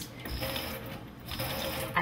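Thin stream of water running from a kitchen faucet's pull-out spray head, through a water-saving aerator, onto hands and into a stainless steel sink.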